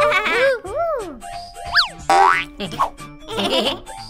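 Children's cartoon background music with sound effects laid over it: springy boings and whistle-like glides that swoop up and down, with a fast rising sweep about halfway through.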